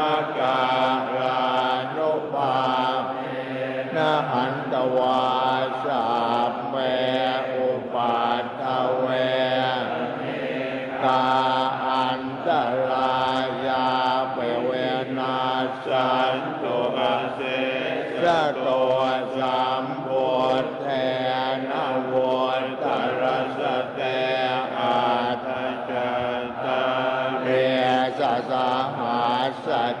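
A group of Thai Buddhist monks chanting Pali blessing verses together, a steady, continuous low-pitched drone of many voices that runs on without pause.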